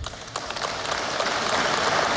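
Audience applause that starts about half a second in and builds to a steady level.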